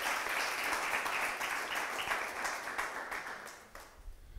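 Congregation applauding, the many hand claps thinning out and dying away near the end.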